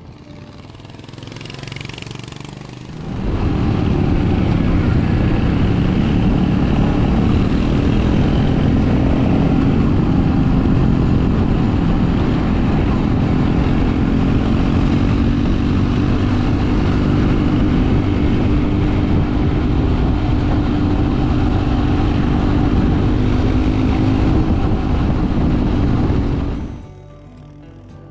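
Royal Enfield Hunter 350's single-cylinder engine, heard from on board while riding at a fairly steady speed, the engine note drifting only slightly. It follows a quieter approaching pass in the first three seconds.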